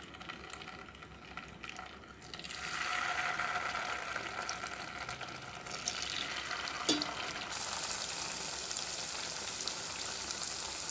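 Egg cubes deep-frying in hot oil in a pan, a steady sizzle that grows louder about two and a half seconds in as more pieces go in. A single brief click comes about seven seconds in.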